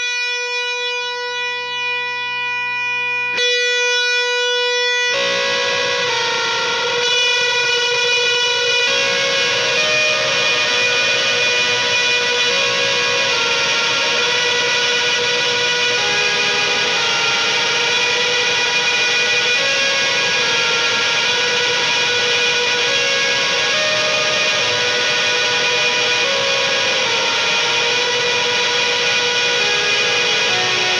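Punk rock song intro: a single held note rings alone for about five seconds, then distorted electric guitars come in and the music runs on loud and dense.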